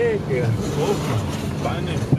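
Steady low hum of a car driving, heard from inside the cabin, with a voice rising and falling over it.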